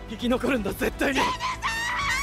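Dramatic anime trailer audio: Japanese voice acting with a man shouting urgently, then a high-pitched, drawn-out shout from about a second in, over a steady low rumble from the score.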